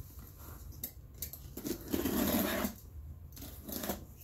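Cardboard packaging being handled as an inner box is opened: a couple of light clicks about a second in, then a longer scraping rustle of cardboard just before the middle.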